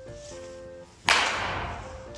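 A baseball bat swung hard through the air: one sharp whoosh about a second in that fades over most of a second, over background music with steady held notes.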